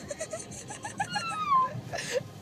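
A young woman laughing and crying at once just after having her wisdom teeth pulled: a run of short, choppy laughing sobs, then one long high wail that falls in pitch about a second in, sounding like a bleat.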